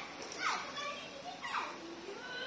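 Children's voices shouting and calling out at play, a few short cries that fall in pitch.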